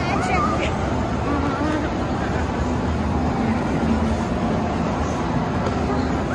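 Busy indoor ice-rink ambience: a steady rumble of the crowd and the hall, with distant high-pitched voices calling out in the first couple of seconds.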